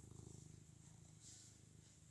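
Domestic cat purring faintly and steadily.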